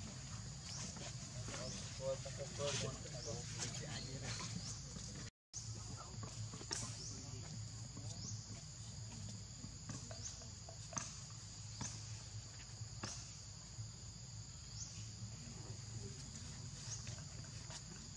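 Outdoor ambience dominated by a steady high-pitched insect drone, with short rising chirps repeating every second or two, over a low hum and a few faint clicks. The sound drops out completely for a moment about five seconds in.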